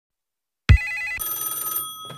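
Electronic transition sound effect: after a short silence it starts abruptly about two-thirds of a second in with a fast two-note trill, then holds several thin, high steady tones.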